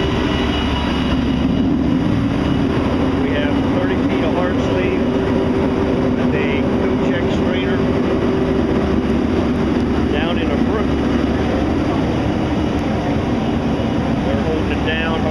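Fire pumper's Cummins ISL9 diesel engine running steadily while driving its Hale Q-Max fire pump at draft: a constant, even hum that holds the same pitch throughout.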